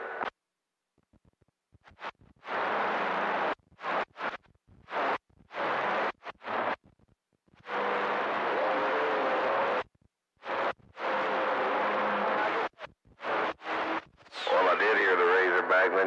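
CB radio receiver on channel 28 giving repeated bursts of static hiss that switch on and off abruptly, about a dozen in all, the longest around two seconds. Some bursts carry a faint steady tone, and a man's voice comes through near the end.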